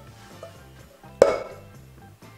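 Background music, with one sharp knock and a short ring about a second in: a wooden spoon striking a stainless steel pot.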